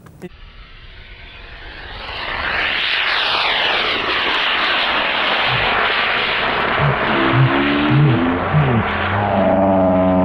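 Aircraft passing overhead: engine noise that builds from about two seconds in and stays loud, with a sweeping, falling whoosh early in its rise. Low humming tones come in near the end.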